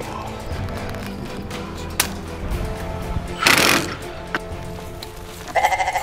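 Background music with steady tones, a short burst of noise about halfway through, and a quavering goat bleat near the end, a sound effect for the goat logo.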